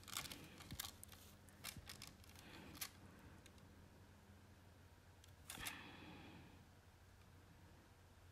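Near silence with faint ticks and scratches of a fine-tip ink pen making short strokes on a small paper tile, and one slightly louder brief scrape about five and a half seconds in.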